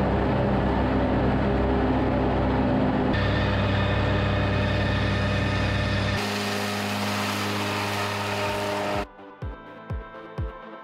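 Ford 5000 tractor engine running steadily under load while it drives a disc mower through tall grass, in three shots that change at about three and six seconds in. Electronic music with a beat takes over about a second before the end.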